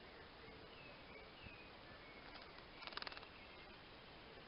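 Faint, short bird chirps repeating every half second or so, with a brief rapid rattle of sharp strokes about three seconds in.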